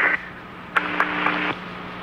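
Telephone-line hiss with a steady low hum on an open phone call. A click comes about three-quarters of a second in, followed by a slightly louder stretch of noise until about halfway through.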